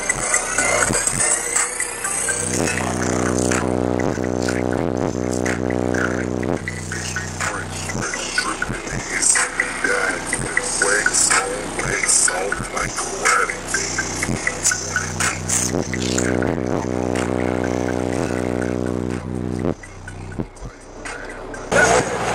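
Music played loud through a car's subwoofer system of two 12-inch Sundown Audio ZV3 subwoofers on a Sundown SAZ-2500 amplifier, with two long held bass notes, one a few seconds in and one near the end. The sound drops away briefly just before the end.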